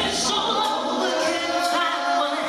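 Two female singers singing live in harmony, gospel-style, with wavering sustained notes. The bass and low accompaniment largely drop away, so the voices stand nearly alone.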